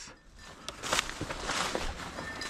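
Dry, tall grass rustling and crackling underfoot as someone walks through it, with a few sharp snaps of stems, loudest in the second half.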